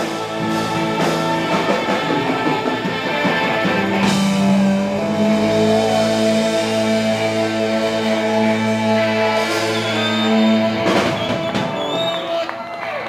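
Live rock band with electric guitars, saxophone and drums playing the end of a song, settling into a long held final chord about five seconds in that stops near the end.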